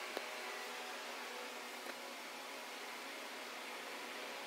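Steady background hiss with faint humming tones, with a light click just after the start and another about two seconds in.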